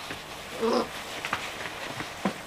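A six-week-old puppy gives one short, low vocal sound, like a brief play growl, about half a second in, amid light scuffling clicks from the puppies playing.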